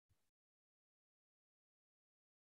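Silence: the audio is essentially muted, with only a faint trace in the first moment.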